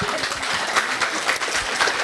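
Audience applauding: many people clapping together in a dense patter.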